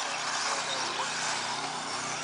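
Electric 1/10-scale four-wheel-drive RC cars running on a dirt track: a steady, even hiss of motors, gears and tyres with a faint low hum.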